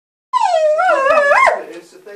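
A dog giving one high-pitched, wavering whine of about a second, excited at the sight of a cat through the glass; the pitch sags and then rises sharply just before it breaks off.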